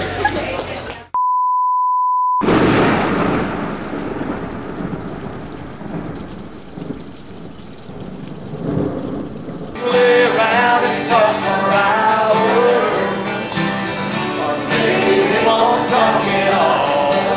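A high, steady electronic beep for about a second, then a rush of thunder and rain that starts loud and fades away over about seven seconds. From about ten seconds in, live country music with acoustic guitars and a singing voice.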